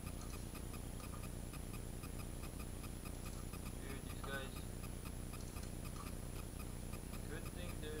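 Clockwork mechanisms of small wind-up tin robots running on a table, giving a rapid, even ticking.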